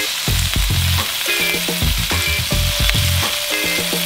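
New York strip steak and lemongrass pieces searing in oil in a hot cast iron skillet, the steak's side pressed to the pan: a loud, steady sizzle.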